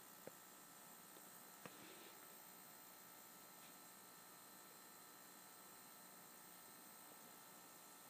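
Near silence: a faint steady hiss with a thin electrical hum, broken by two tiny clicks, one just after the start and one about a second and a half in.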